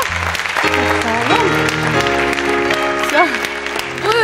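Studio audience applauding as a sung pop song ends, with sustained instrumental chords going on under the clapping.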